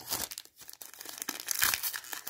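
Foil wrapper of a Magic: The Gathering booster pack crinkling and tearing as hands work it open, in irregular crackles that get louder near the end.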